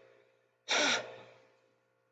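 A single short, sharp breath close to the microphone, a little over half a second in, over a faint steady electrical hum.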